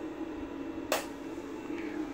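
A single sharp click of a light switch being turned off, about a second in, over a steady low hum.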